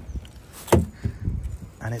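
The door latch of a long-abandoned BMW E36 coupe releasing with a sharp clunk as the outside handle is pulled, about three quarters of a second in, followed by a few lighter knocks as the door swings open.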